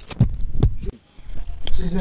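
A handheld microphone being handled, giving two low thumps with rustling in the first second. A woman's voice starts near the end.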